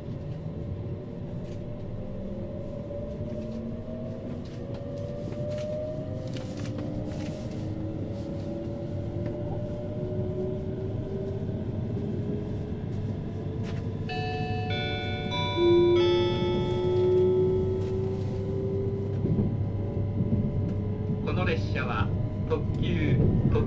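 E657-series limited express electric train accelerating away from a station, heard inside the carriage: the traction motors whine in tones that rise steadily in pitch over a rumble of wheels on rail. About fourteen seconds in, a multi-note onboard chime sounds, changing once about two seconds later, and a recorded announcement begins near the end.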